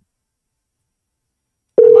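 Near silence, then near the end a loud, steady telephone tone starts as the outgoing internet call dials: the ringing tone that the caller hears while the other phone rings.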